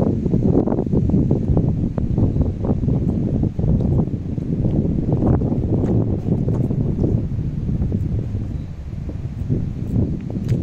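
Wind buffeting the microphone: a loud, gusting low rumble that rises and falls throughout.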